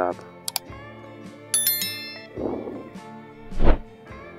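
Subscribe-reminder animation sound effect: two quick clicks, then a bright bell chime about a second and a half in that rings briefly, over background guitar music. A short low thump comes near the end.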